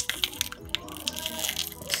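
Plastic blind-bag packaging crinkling and clicking as a tiny plastic figure is worked out of it, with a woman's raised voice in the background.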